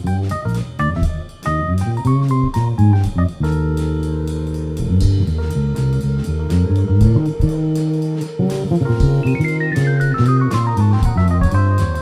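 Live trio of electric bass guitar, drum kit and electric keyboard playing together, with steady cymbal strikes over moving bass notes. The keys hold a sustained organ-like chord for several seconds partway through, then play a quick falling run of notes near the end.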